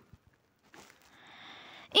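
A pause in speech: near silence, then a faint hiss that grows over the last second, the speaker drawing a breath before talking again.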